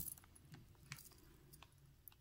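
Near silence, with a few faint clicks of a tiger's eye chip and shell bead necklace being handled.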